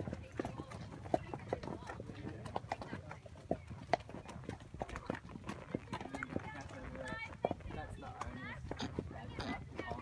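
Horses' hooves on a dirt track, an irregular clip-clop of several horses at a walk. Faint voices come in from about seven seconds in.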